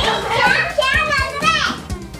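Children's excited voices and exclamations over background music.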